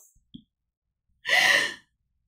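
A woman's audible breath, about half a second long, taken a little over a second in during a pause between sentences.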